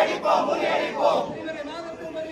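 Crowd of protesters shouting slogans together, with loud shouts near the start and again about a second in.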